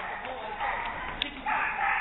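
High, drawn-out shouts over voices echoing in a large indoor hall, with a louder sustained call starting about one and a half seconds in.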